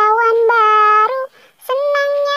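A child singing an Indonesian children's song in a high, clear voice, holding long steady notes. The singing breaks off briefly past the middle and comes back near the end.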